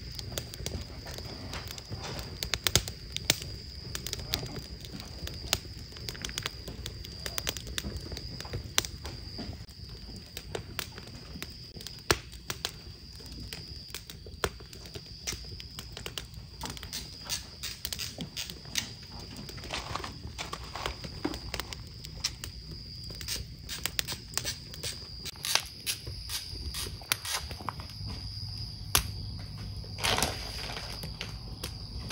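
Wood fire crackling: burning logs giving irregular sharp pops and snaps over a steady low bed of noise.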